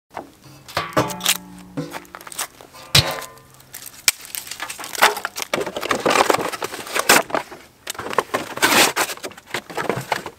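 Steel fire-pit lid clanking, with a metallic ring after two sharp knocks, followed by cardboard beer cases being torn and crumpled in a run of crackling rips.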